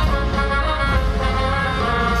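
Live gypsy-punk band playing loudly, a saxophone holding long notes over drums.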